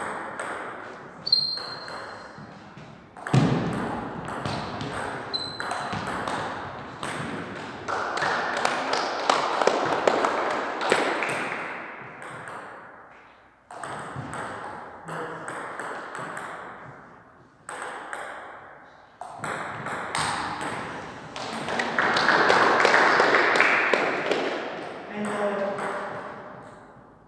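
Table tennis ball clicking off paddles and table in rallies, as a run of short sharp ticks, with two long stretches of louder voices and noise from the hall.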